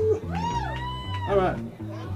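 Live rock band playing: a repeating bass line and drums under a lead line that swoops up and down in pitch in arching bends.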